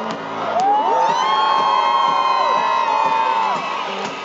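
Stadium concert crowd screaming and cheering. Several high-pitched screams rise together about half a second in, hold, and fall away near the end.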